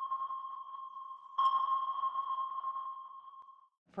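Sonar-style ping sound effect: a steady high tone that slowly fades, struck again about a second and a half in and dying away shortly before a woman's voice begins at the very end.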